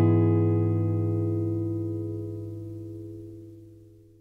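Background music: a final strummed guitar chord rings and fades away, dying out near the end.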